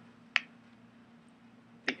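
A single sharp tap of chalk against a chalkboard, about a third of a second in, over a quiet room with a faint steady hum.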